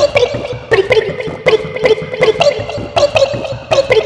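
Sample-based remix music: a short snippet of cartoon audio chopped up and repeated as a beat, with a sharp hit about every three quarters of a second over a held pitched note.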